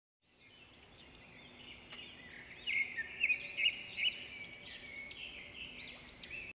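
Several birds chirping and calling in quick, overlapping phrases, fading in over the first second and growing louder from about two and a half seconds in.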